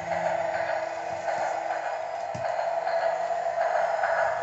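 Battery-powered Bump 'n' Go toy train driving across a tile floor: a steady whir from its motor and drive wheels, with a faint knock about two and a half seconds in.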